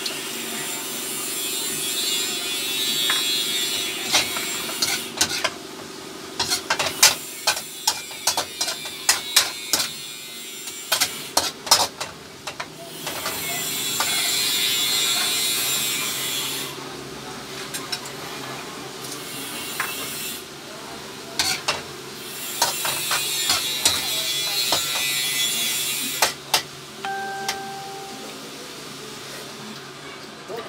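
Stir-frying in a stainless-steel wok: food and sauce sizzle in waves of hiss a few seconds long. Between them a metal spoon clatters and scrapes against the wok in runs of sharp strikes.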